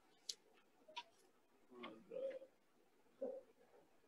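Near silence on a video call, broken by a few faint clicks and brief faint sounds.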